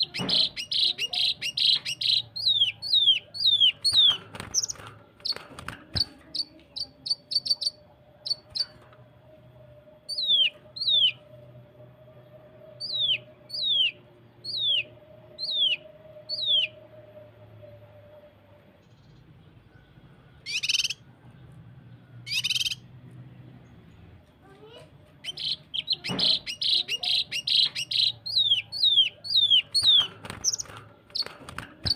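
A cucak kinoi (blue-masked leafbird) sings rapid-fire 'tembakan' notes: runs of sharp, high, downward-sweeping whistles, packed close together at the start and again near the end, more spaced out in the middle. About two-thirds through come two short harsh, noisy bursts.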